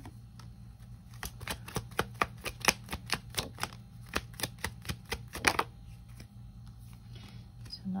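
An oracle card deck being shuffled by hand: a quick run of short papery clicks and flicks, about four a second, as the cards slide and snap against each other.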